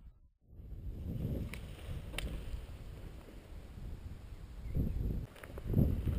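Wind buffeting an outdoor microphone: a low rumble that swells in gusts, strongest a little before the five-second mark and again near the end, with a few faint clicks. It follows a brief silence at the very start.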